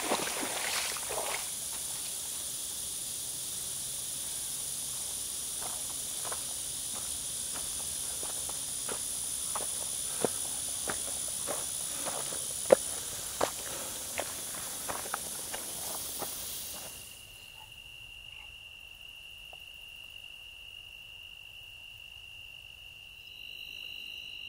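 Water sloshing as a person wades out of a lake in the first second or so. Then footsteps on a path, a scatter of sharp crunches, under a steady chorus of evening insects. About 17 s in the sound drops to a quieter scene with one steady insect trill.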